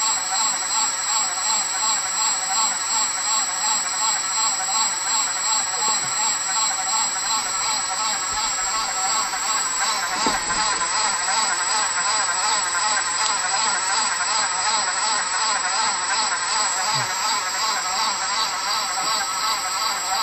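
Multichannel peristaltic flow-dividing pump running slowly, at about 54 RPM, while it pumps a thick clay-wax emulsion: a steady machine whine that pulses evenly. There is a short knock about ten seconds in.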